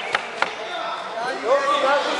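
Two sharp smacks about a third of a second apart, then several people calling out in an echoing sports hall.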